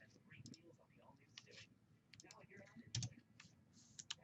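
Faint clicks and rustles of trading cards and a plastic card sleeve being handled, with a soft knock about three seconds in.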